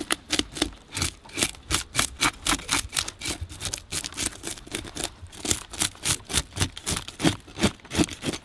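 Serrated metal fish scaler scraped in quick repeated strokes against a snapper's scales, about four rasps a second, flicking the scales off.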